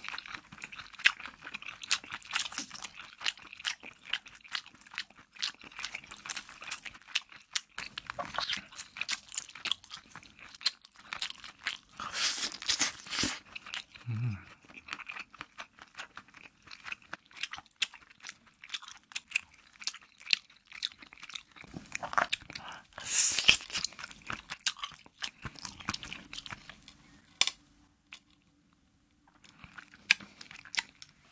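Close-miked chewing and crunching of stretchy rainbow cheese topped with hard candy sprinkles: a dense run of crisp crackles, with louder crunching bursts about twelve and twenty-three seconds in and a short pause near the end.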